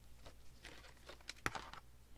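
Faint rustling of book-page paper strips being handled and moved, with one sharp click about one and a half seconds in.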